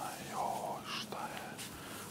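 A person whispering briefly, a short hushed phrase in the first second.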